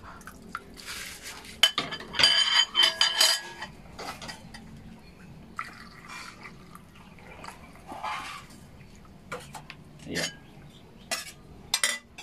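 Metal pot and ladle clattering and clinking while fish soup broth is ladled and poured from the pot into a bowl, with some liquid splashing. The busiest clatter comes about two to three seconds in, then scattered lighter clinks.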